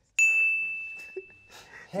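A single bell-like ding sound effect: one clear high tone struck about a fifth of a second in, ringing out and fading over about a second and a half. It marks a laugh point being scored.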